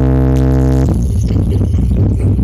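Electronic dance music played loud through a stacked sound system of large subwoofer cabinets: a held synth chord with heavy bass that breaks about a second in into a pulsing bass-heavy beat.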